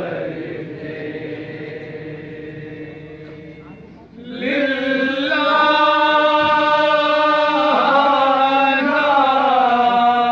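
A noha, a Shia mourning lament, chanted by a male reciter into a microphone in long held notes. A fainter note comes first, then about four seconds in a much louder note begins and is held, wavering slightly in pitch.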